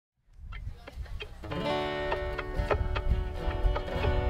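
Acoustic guitar picked a note at a time, then from about a second and a half in several notes ring on together as chords.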